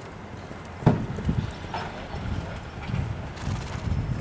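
Hoofbeats of a horse moving on soft dirt arena footing: dull low thuds in quick uneven groups, beginning with the loudest, sharpest thud about a second in.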